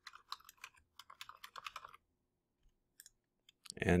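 Typing on a computer keyboard: a quick run of keystrokes for about the first two seconds, then a pause and two or three single clicks near the end.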